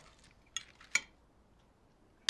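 Two light clinks of cutlery against crockery, about half a second and a second in, over quiet room tone.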